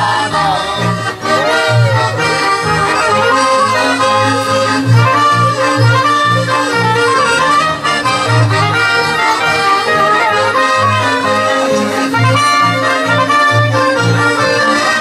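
A Polish village folk band (kapela) from the Pogórze Gorlickie region playing an instrumental dance tune on accordion, fiddles, clarinet, trumpet and double bass, with a bass line pulsing in a steady beat under the melody.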